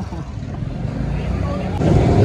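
Motorcycle engine and road noise, a low steady rumble that grows louder, with wind hitting the microphone near the end as the bike gets moving.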